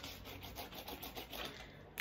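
Faint rubbing and rustling of paper sheets being handled and slid across a surface.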